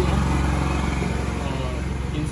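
An engine running with a steady low rumble.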